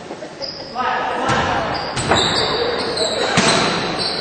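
Basketball game in a gym: a ball bouncing on the court, with sharp thuds about two and three and a half seconds in, over the voices of players and crowd echoing in a large hall.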